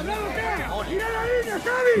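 A match commentator's voice speaking over the broadcast, with a low steady background hum under it that cuts off about a second and a half in.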